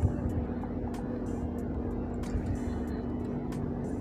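Scattered light clicks of a computer mouse and keyboard over a steady low electrical hum with a fixed tone.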